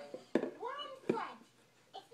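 Toddler babbling: two short vocal sounds about three-quarters of a second apart, each opening with a sharp tap.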